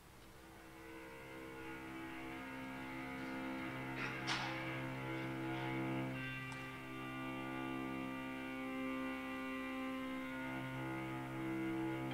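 String quartet score fading in over the first few seconds into long held chords over a low sustained note, with a brief sharp accent about four seconds in. Its tempo and dynamics are coded from temperature variances between Victorian times and now.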